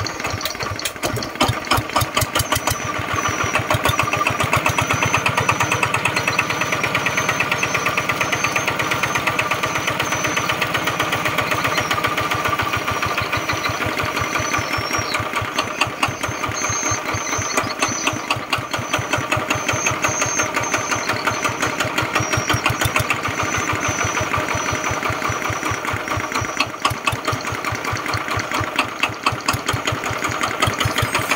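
Mitsubishi 11 single-cylinder, water-cooled horizontal diesel engine running unloaded, with a steady, even, rapid firing beat.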